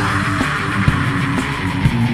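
Lo-fi death/thrash metal demo recording: distorted electric guitar and bass over drums. A high, screeching sound slides up just before and holds over the riff for most of the two seconds, then fades near the end.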